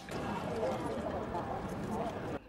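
A crowd's many footsteps on cobblestones with a low murmur of voices, forming a steady, even noise.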